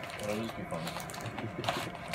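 Plastic lure packaging crinkling and crackling as it is handled, with a brief voice near the start.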